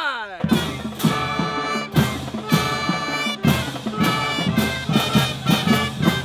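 A school band of brass, woodwinds and drums playing a loud, brassy up-tempo tune with regular drum hits, starting about half a second in. Just before it, a man's shout trails off downward.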